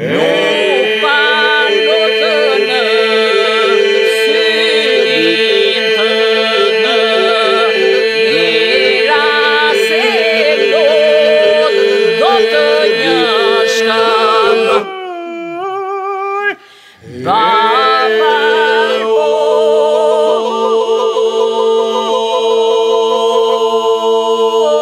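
Albanian Lab iso-polyphonic folk singing: a group holds a steady sung drone (iso) while solo voices weave ornamented melody lines above it. About 15 s in, the drone stops and one voice sings alone with downward glides. After a brief pause the full group and drone come back in.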